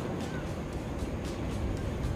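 Sea waves washing steadily onto a rocky shore, an even, low-heavy rush of water noise.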